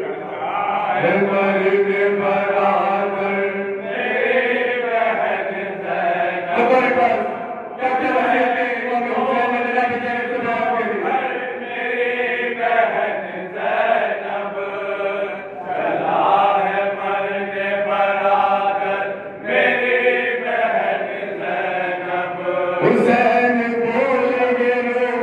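Male noha recitation: a lead reciter chants a Shia lamentation poem unaccompanied, in long, held phrases with short breaks for breath.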